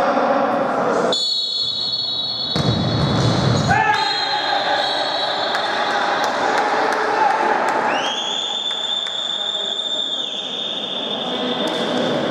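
Indoor futsal game in a gym hall: players' voices echoing, the ball thudding on the wooden floor, and one long, high referee's whistle blast about eight seconds in, lasting about two seconds.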